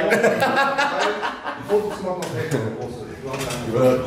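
A man chuckling and talking in low, broken phrases.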